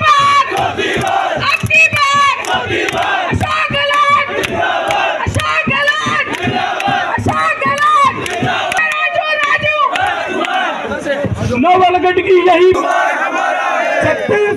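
A large crowd shouting political slogans together, call after call, loud and continuous.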